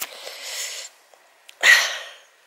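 A woman's breath close to the microphone: a long breathy exhale, then a short, sharp, loud burst of breath near the end, like a sneeze or huff.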